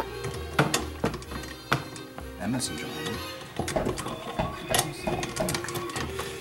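Sharp metal clicks and knocks as a wire whisk attachment is fitted onto a KitchenAid stand mixer over a steel bowl, with music and faint voices underneath.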